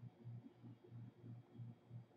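Near silence: room tone with a faint low hum that pulses about four times a second.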